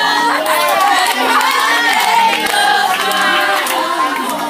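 A group of young women singing together and cheering, with hand-clapping mixed in.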